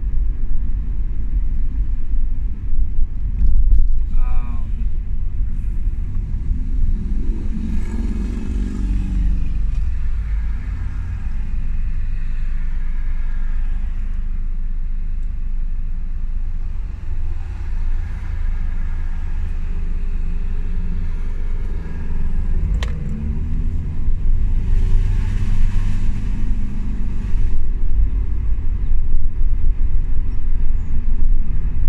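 Steady low rumble of a car's engine and road noise heard inside the cabin while driving, with a short chirp about four seconds in and a sharp click near the end.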